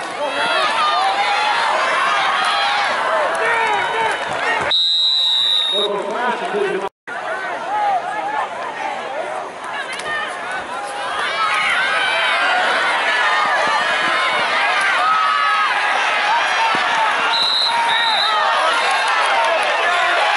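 Football crowd in the stands shouting and cheering through a play, many voices at once. A referee's whistle sounds for about a second around five seconds in, and two short whistle blasts come near the end. The sound drops out for a moment about seven seconds in.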